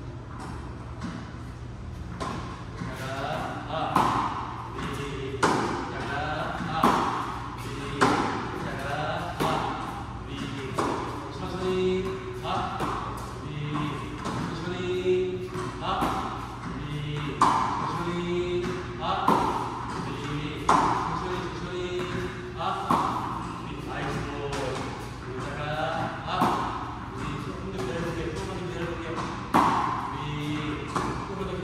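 Tennis balls struck by a racket again and again, a hit about every one and a half seconds, ringing in a large indoor hall.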